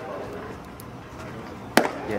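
A single sharp crack of a baseball bat hitting a pitched ball, near the end.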